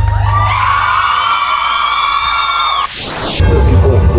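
Live band music with a cheering crowd. The bass beat breaks off about a second in for a long held high note, then a short bright crash, and the beat comes back in near the end.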